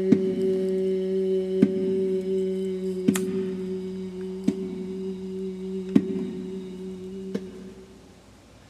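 A long, low note held by a singer's voice, with a light tap on a small bongo about every second and a half. The note slowly fades away near the end.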